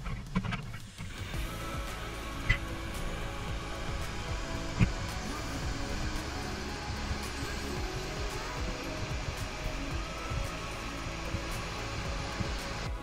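Background music over the steady rushing noise of Victoria Falls' water and wind on the microphone, with three sharp knocks in the first five seconds.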